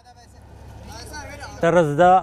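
Low vehicle engine rumble swelling louder, with men's voices faint behind it. About a second and a half in, a man's voice calls out loudly over it.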